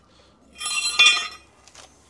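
Worn steel cultivator sweeps clinking together as they are handled, ringing with a bright metallic tone for about a second before fading.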